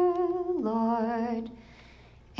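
A woman singing alone, with no instrument heard: a held note steps down to a lower note with a gentle vibrato, then fades out about a second and a half in.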